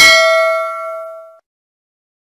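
Notification-bell sound effect from a subscribe-button animation: a single bright bell ding that rings out and fades away within about a second and a half.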